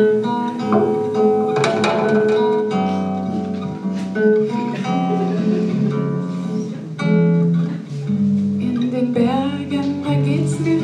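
Acoustic guitar playing with other instruments in an instrumental passage of a song, without vocals.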